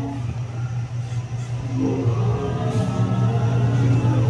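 Dark-ride vehicle rolling along its track with a steady low hum. Ride music joins in about halfway through.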